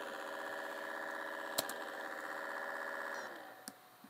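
A frozen MacBook gives off a steady electronic buzz while it hangs on boot errors. The buzz fades out a little after three seconds in. A sharp click comes about midway, and fainter clicks follow near the end.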